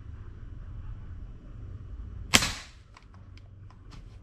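Custom .22 (5.5 mm) PCP air rifle firing once about two-thirds of the way in, a single sharp crack, its air cylinder near the bottom of its fill. A few light clicks follow near the end as the rifle's action is handled.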